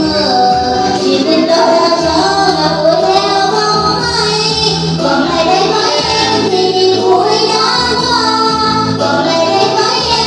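Home karaoke: singing through a handheld microphone over a backing music track.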